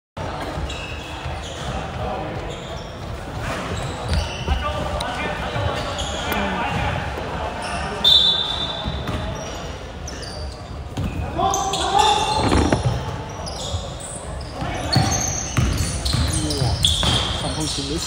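Basketball bouncing on a wooden gym court during a game, with players' voices, all ringing in a large hall. A brief high-pitched squeal about eight seconds in is the loudest sound.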